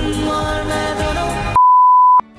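Indian film music cuts off abruptly about one and a half seconds in, replaced by a loud, steady, single-pitched beep used as a glitch-transition sound effect.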